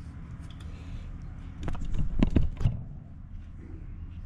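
A few short clicks and knocks from hand-working a rubber spark plug boot on its lead, bunched about two seconds in, over a steady low hum.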